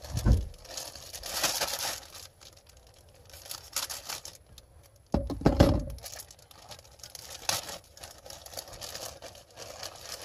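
Plastic food bag crinkling and rustling as it is handled and opened, densest in the first couple of seconds. A brief, louder low-pitched sound comes about five seconds in.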